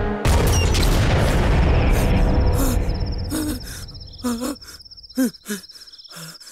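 A sudden heavy boom as the music breaks off; it dies away over a few seconds. Then crickets chirp steadily, and from about halfway short low calls that bend in pitch repeat several times.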